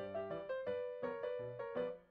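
Background piano music: a light melody of short notes played in quick succession.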